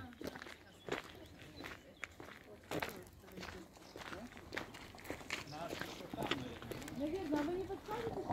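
Footsteps on a gravel path at a walking pace, with faint voices of other people, louder near the end.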